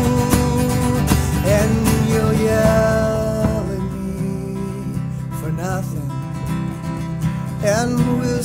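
Live acoustic folk music: acoustic guitar strumming under held melody notes, in an instrumental passage between sung lines, thinning out a little about halfway through.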